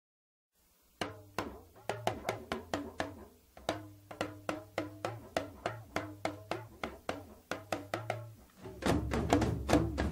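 Recorded Dagbamba drumming from Ghana, played on hourglass talking drums: sharp, ringing drum strokes several times a second, starting about a second in. Near the end the drumming grows louder and denser, with a deep low rumble underneath.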